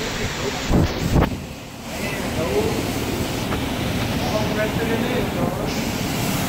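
Wind buffeting the microphone over a steady rushing background noise, with two heavy low thumps of wind about a second in. Faint voices can be heard in the background.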